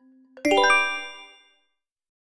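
Quiz answer-reveal chime: a soft ticking countdown tone stops about half a second in and a bright bell-like chime rings once and fades out over about a second, marking the answer being shown.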